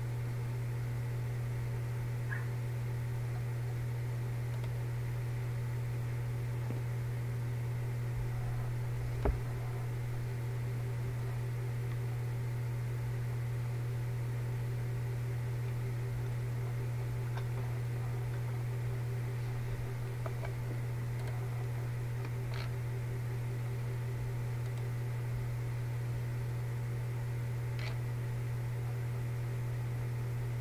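Steady low background hum throughout, with one soft thump about nine seconds in and a few faint clicks.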